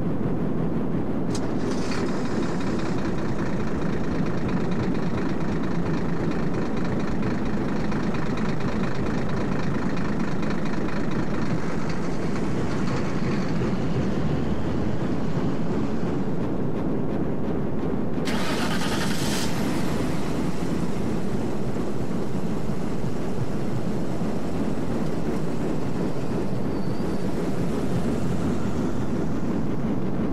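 A steady, loud low rumbling noise with no clear rhythm or pitch. About eighteen seconds in, a brighter hiss rises over it for a little over a second.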